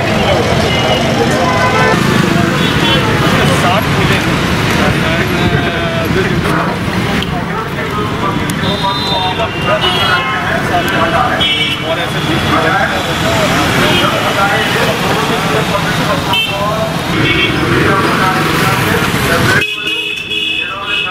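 Busy street sound: many people talking at once over running traffic, with short vehicle horn toots, most of them near the middle.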